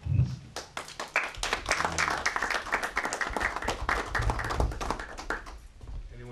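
Audience applauding: many hands clapping, starting about half a second in and dying away near the end.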